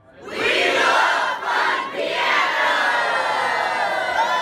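A crowd of many voices cheering and shouting together, rising from silence to full loudness within the first half second.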